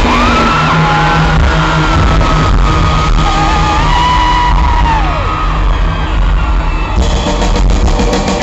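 Loud live rock band, with drums, bass and electric guitar, recorded close to the stage in a large hall. A long high note is held over the music for the first five seconds, falling in pitch in steps before it stops.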